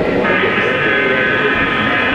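HO-scale model diesel locomotive running on a club layout, giving a steady high-pitched whine of several tones that grows louder shortly after the start, over the chatter of a crowd.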